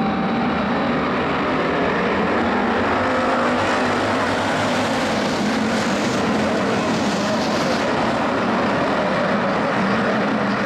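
A pack of IMCA Hobby Stock race cars racing on a dirt oval: many engines running hard at once in a steady, dense roar, with single engines' pitch rising and falling as they pass.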